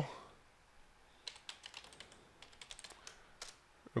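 Typing on a computer keyboard: a run of quiet, irregular key clicks from about a second in until shortly before the end.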